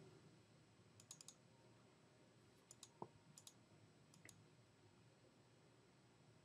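Near silence with a few faint computer-mouse clicks in small clusters, about one, three and four seconds in.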